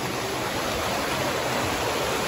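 A small woodland stream rushing over rocks, a steady even sound.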